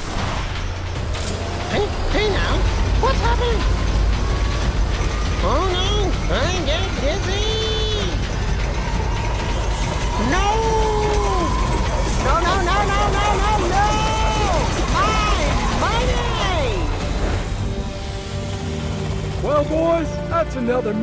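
Cartoon car-chase sound effects: a string of toy-car engine revs, each rising and then falling in pitch over about a second, over a steady low rumble.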